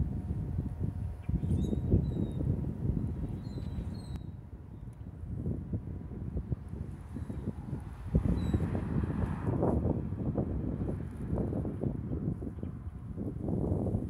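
Wind rumbling and buffeting on the microphone in uneven gusts, with a few faint, short high bird chirps.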